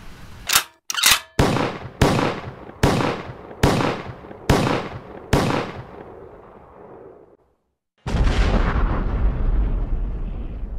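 Produced outro sound effects: about eight loud, sharp bangs, each under a second after the last and ringing out briefly. They fade away, and after a moment of silence a single deep boom with a long rumble starts near the end.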